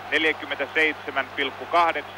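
A man commentating in Finnish, mid-sentence, over a steady low hum.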